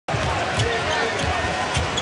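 Basketball being dribbled on a hardwood court, a series of thumping bounces over the steady murmur of an arena crowd.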